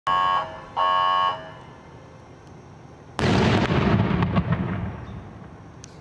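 Two short horn-like warning tones, then about three seconds in the sudden blast of a police bomb squad's controlled detonation of a homemade explosive device, with crackling as it dies away over about two seconds.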